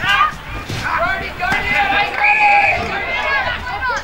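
Voices shouting and calling out during play on a football ground, with one long, high, held shout a little past the middle.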